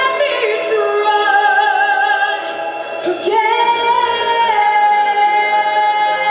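A female vocalist singing live into a handheld microphone, holding long notes with vibrato. About three seconds in she slides up onto a new sustained high note, then eases down slightly onto another long held note.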